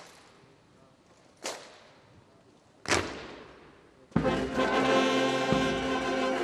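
Three sharp strikes about a second and a half apart, each ringing away, then about four seconds in a military brass band starts playing.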